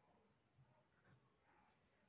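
Near silence, with a few faint, short scrapes of a felt-tip pen and hand moving on a paper textbook page.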